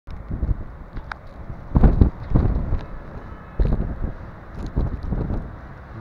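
Blizzard wind gusting against the microphone in irregular surges, the strongest about two seconds in.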